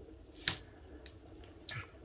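A single sharp click or tap about half a second in, and a fainter, duller knock near the end, against a quiet room.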